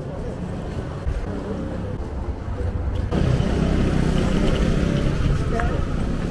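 Outdoor promenade ambience: a steady low rumble with voices of passers-by talking, turning suddenly louder about halfway through.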